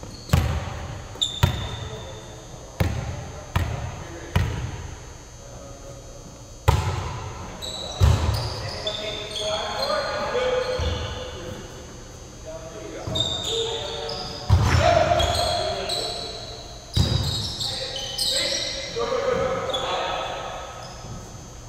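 A volleyball being played in a rally: about ten sharp smacks at irregular intervals as the ball is hit and strikes the hardwood floor, each echoing in a large hall.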